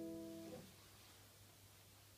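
A keyboard's final held chord, the closing chord of the 6/8 practice piece, cut off about half a second in. Near silence follows, with a faint low hum.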